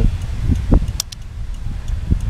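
Wind buffeting the microphone, with a single sharp click about a second in as the motorcycle's handlebar turn-signal switch is pushed down.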